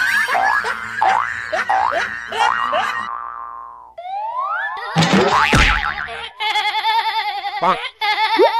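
Edited-in cartoon comedy sound effects: a quick run of repeated boings for about three seconds, then rising whistle-like glides, a brief noisy burst about five seconds in, and a wavering, warbling tone near the end.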